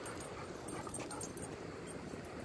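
Treeing Walker Coonhound whimpering softly, with a few light high clicks over steady outdoor background noise.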